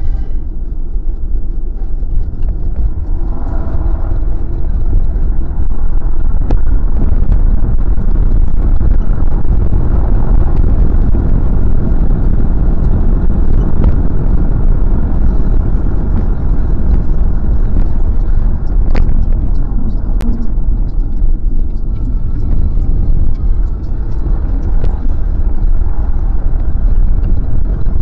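Steady low rumble of road and engine noise heard inside the cabin of a moving Kia Carens, growing louder about five seconds in.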